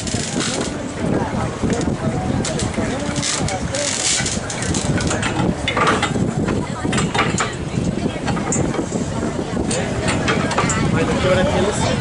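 Indistinct voices of several people talking, over the steady noise of a boat under way.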